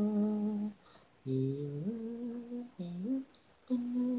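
Unaccompanied solo singing voice from an isolated a cappella vocal track: a held note ends under a second in, then short phrases follow, the first two sliding up in pitch, with brief silences between them.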